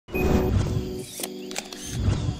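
Intro sound effect with music: a low boom as it opens, steady held tones, then a few sharp clicks about a second in.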